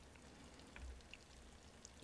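Near silence: the faint simmer of sukiyaki broth bubbling in a cast-iron pan, with a few soft ticks.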